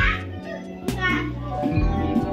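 Background music with a bass line and occasional low drum thumps, with children's voices calling out as they play.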